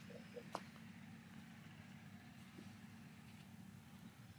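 Near silence: a faint steady low hum, with one small click about half a second in.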